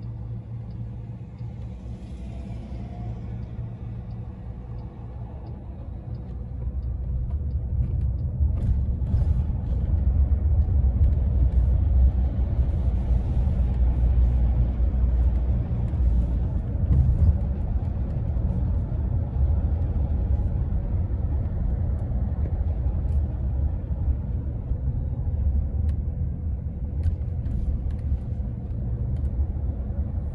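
Low road and tyre rumble inside the cabin of a driverless Waymo Chrysler Pacifica minivan driving on city streets, getting louder about seven seconds in and staying so.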